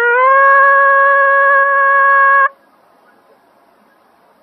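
Nadaswaram in raga Devagandhari sliding into a long held reedy note, which cuts off abruptly about two and a half seconds in, leaving only faint recording hiss.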